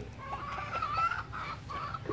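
Chickens clucking: a string of short, wavering calls.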